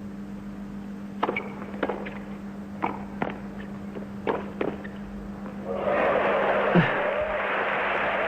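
Tennis rally: about eight sharp pops of racket strokes and ball bounces over some three and a half seconds, then crowd applause and cheering from about six seconds in, greeting the crosscourt forehand passing shot that wins the point, over a steady low hum.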